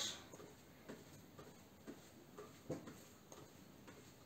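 Faint soft footfalls of a person marching in place in socks on an exercise mat, about two steps a second.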